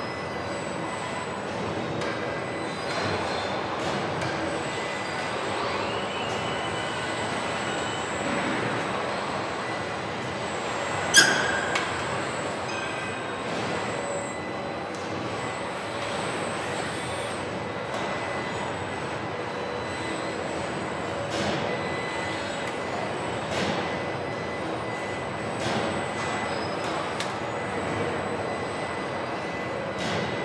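Steady factory machinery noise with faint whining tones and scattered small knocks, broken by one loud metallic clang that rings briefly about eleven seconds in.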